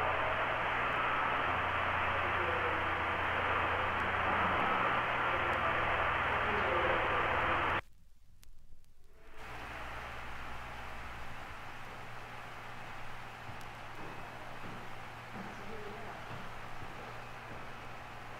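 Steady hiss and low hum of an open long-distance telephone line, narrow and muffled with no high end. It cuts out about eight seconds in, then comes back quieter.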